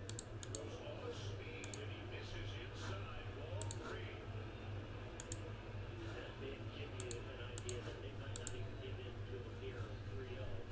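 Scattered sharp clicks at a computer, often in quick pairs, a few seconds apart, over a steady low hum.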